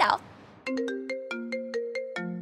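Mobile phone ringtone: a quick melody of bell-like, marimba-toned notes, about five a second, starting about half a second in.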